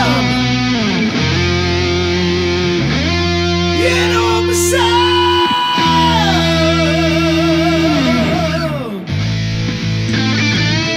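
Hard rock band playing an instrumental passage: distorted electric guitar chords changing every couple of seconds under held lead notes that slide between pitches and waver with vibrato. There is a brief drop in sound about nine seconds in before the band comes back in.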